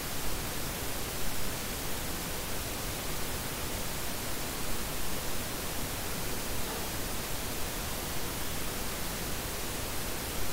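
Steady, even hiss of background noise with no distinct events, typical of a recording's microphone or room noise.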